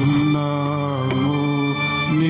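A single voice chanting a slow devotional song in long held notes that drift gently down in pitch.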